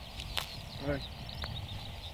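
A golf club strikes the ball off the fairway turf with one sharp click, a little under half a second in.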